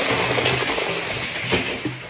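A bucketful of ice cubes poured out in one go, cascading onto a countertop and into a plastic cup: a dense clattering rush that slowly dies down.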